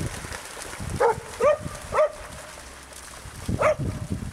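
Dogs barking: three quick barks in a row about a second in, then one more near the end.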